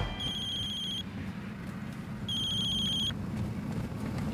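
A mobile phone ringing: two short trilling electronic rings, each just under a second long, with a pause between them. A low, steady car-cabin hum runs underneath.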